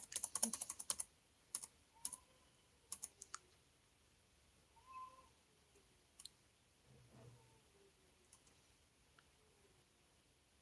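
Light clicks and taps of typing, a quick dense run in the first second, then a few scattered single clicks, all at a low level.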